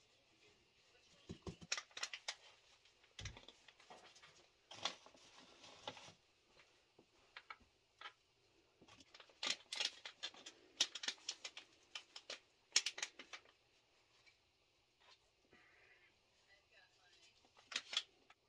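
Faint, irregular rustling and crackling of gloved hands pressing potting soil around a lettuce seedling in a plastic planter pocket, with a few sharper clicks.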